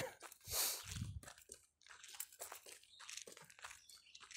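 Irregular crunching footsteps on a forest trail, with rustling that is loudest about half a second in.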